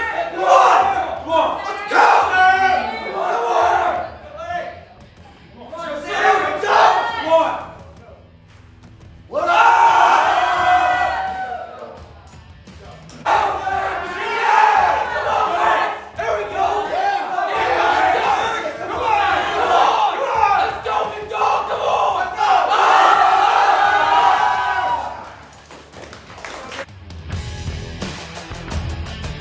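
A crowd of teammates yelling encouragement at a lifter during a heavy barbell squat, the shouting coming in several loud waves with short lulls between.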